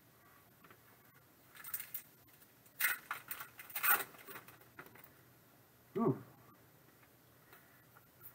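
Foil trading card pack wrapper being torn open and crinkled by hand, in several short rustling bursts over about three seconds.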